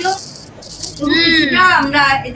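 A person's voice over an online call, preceded by two short bursts of high hiss in the first second.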